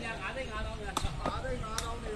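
A woven sepak takraw ball being kicked in a rally: two sharp knocks, about a second in and near the end, over the chatter of spectators.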